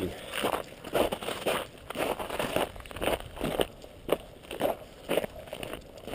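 Footsteps crunching in snow at a walking pace, about two steps a second.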